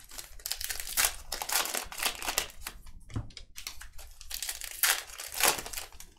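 Crinkling and rustling of trading-card pack wrappers being handled and opened, a quick run of short crackles.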